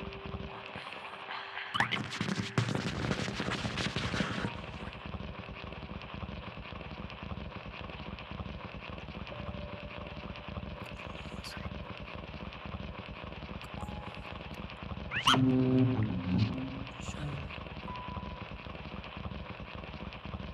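Free-improvised experimental music for grand piano and voice with electronics: a dense clattering, rattling texture for a few seconds near the start, scattered short held tones, and a fast rising glide with a loud burst of low tones about fifteen seconds in.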